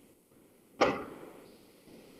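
A single short whoosh of noise about a second in, starting suddenly and fading away over about half a second.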